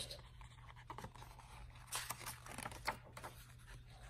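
Faint rustling and scratching of a picture book's paper page being turned and smoothed by hand, clustered about two to three seconds in.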